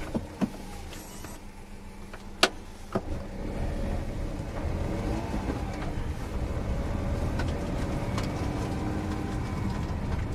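Honda S660's small turbocharged three-cylinder engine heard from inside the cabin, idling at first with a few sharp clicks. About three seconds in it grows louder as the car pulls away and accelerates, its note climbing.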